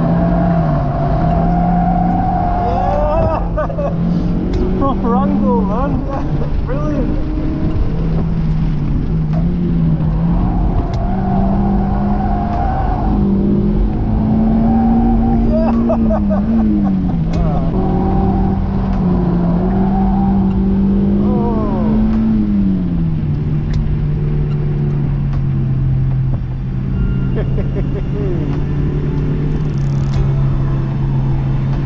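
Mazda MX-5 NC's four-cylinder engine held high in the revs on track, its pitch rising and falling and dropping lower near the end. Tyres squeal with a wavering pitch at times. It is heard from inside the open-top cabin, with wind noise on the microphone.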